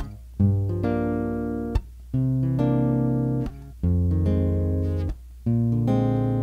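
Acoustic guitar strumming the intro of a song: four different chords, each left to ring for about a second and a half and then stopped, with a short gap before the next.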